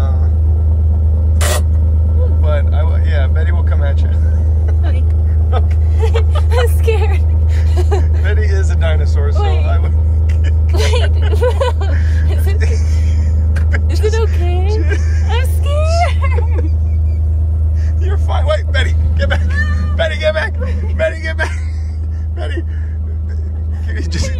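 A truck engine idling with a steady low hum, with people's voices over it.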